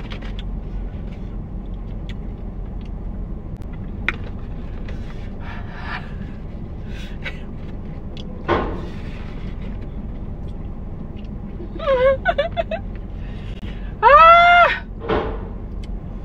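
Steady low hum of a car interior with faint chewing sounds of dry, spicy beef jerky (kilishi). Near the end a woman hums a few short notes, then gives one loud rising-and-falling 'mmm' at the heat of the spice.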